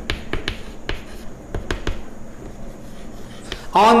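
Chalk writing on a blackboard: a quick series of sharp taps and scrapes as a word is written, most of them in the first two seconds, then fainter.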